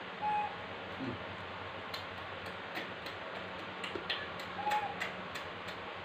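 Light, sharp clicks, about three a second and unevenly spaced, starting about two seconds in, over a steady low hiss. A brief high peep comes near the start and another shortly before the end.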